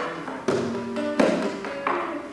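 Two nylon-string classical guitars playing a duet, with sharp accented chords struck three times, about two-thirds of a second apart, over held notes.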